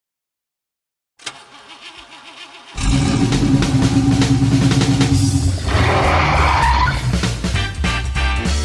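TV show intro jingle. It opens with a quiet wavering sound, then loud music with a steady heavy beat comes in at about three seconds. A noisy, hissing sweep sound effect lies over the music in its second half.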